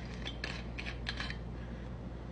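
Screw cap of a Jägermeister bottle being twisted open by hand: four or five short faint clicks and scrapes close together in the first second or so.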